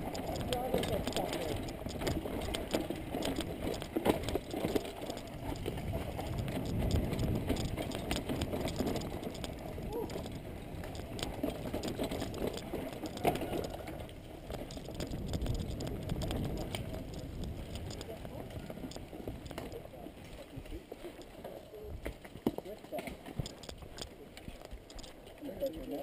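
Ride noise from a mountain bike on a dirt forest singletrack, picked up by a camera carried on the rider: an uneven rumble of tyres and wind with scattered knocks and rattles over bumps. It grows quieter over the last third.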